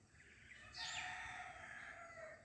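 A rooster crowing: one drawn-out call starting under a second in, with birds chirping.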